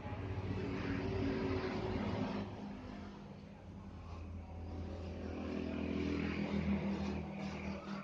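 A motor vehicle engine running, growing louder and fading off twice.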